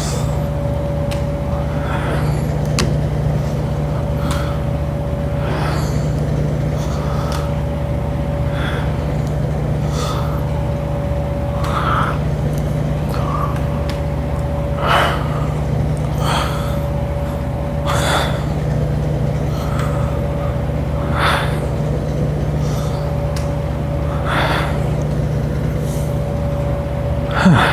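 Steady low machine hum with a faint constant tone, under short soft bursts about every one and a half seconds from a kneeling one-arm cable pulldown set as the reps go on.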